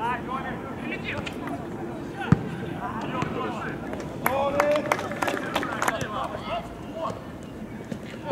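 Voices calling out during a football match, with one sharp thud about two seconds in and a few short knocks about halfway through.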